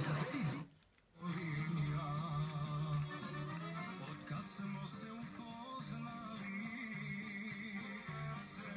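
Music playing through a TV's speaker, with a sustained low note and an accordion-like melody. It cuts out for about half a second near the start as the channel changes, then continues.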